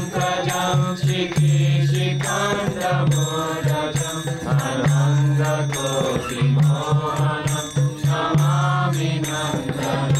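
A group chanting a devotional mantra in a kirtan: voices singing together over a steady rhythmic beat, with a low held tone that comes and goes under the singing.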